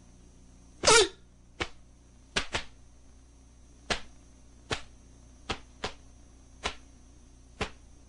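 Taekwondo poomsae (Taegeuk 8 Jang) being performed: sharp, irregularly spaced snaps of the uniform with punches, blocks and kicks, about ten in all. About a second in there is a short, loud kihap shout falling in pitch.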